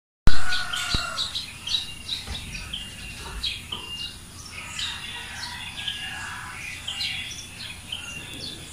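Many small birds chirping together in a morning chorus, with short, overlapping calls throughout. A sharp knock at the very start is the loudest sound, and a few fainter clicks follow.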